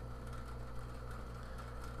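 Low steady electrical hum with faint even hiss: recording room tone, with no distinct events.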